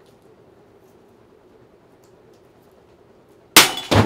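Sharpened metal ceiling-fan blades spinning with a faint steady hum, then striking a coconut with a sudden loud crack about three and a half seconds in, cracking its shell open.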